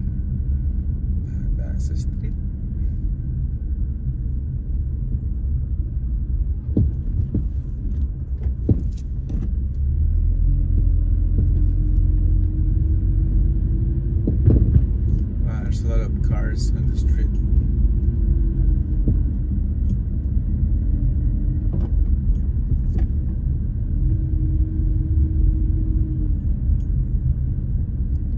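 Car driving slowly along a street, giving a steady low rumble of engine and tyres. The rumble gets louder about ten seconds in, and there are a few scattered clicks and rattles.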